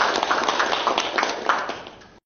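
Applause from a seated meeting audience: many hands clapping together in a dense, even patter that fades away near the end.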